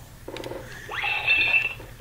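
A LeapFrog children's learning laptop toy playing from its small speaker in music mode: a key click, then an electronic tone that rises and holds steady for about a second.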